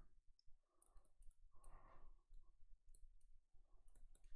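Near silence with a few faint clicks and taps of a stylus writing on a tablet.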